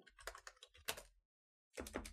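Typing on a computer keyboard: a quick run of faint keystroke clicks, a short pause, then more keystrokes near the end.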